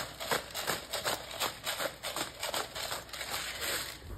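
Salt being sprinkled over raw fish fillets: a steady run of light, gritty ticks, about four a second.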